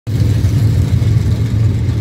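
Engines of dirt-track race cars running out of sight, a steady low drone.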